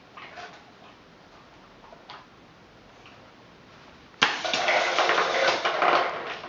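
A homemade push-button dog-treat machine set off: faint taps, then about four seconds in a sudden loud run of rapid clicking and rattling lasting about two seconds as it dispenses a biscuit.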